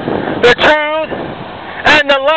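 A street preacher's voice speaking out in two short, drawn-out phrases over steady outdoor background noise.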